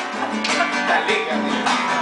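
Acoustic guitar strummed in a steady rhythm, about two strokes a second.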